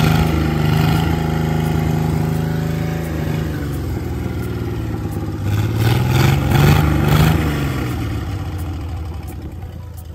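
Freshly overhauled Chrysler Crown M47-S flathead six marine engine running on a test stand at idle. Its speed sags about three seconds in, then it is revved briefly and settles back down around six to seven seconds. The sound fades toward the end.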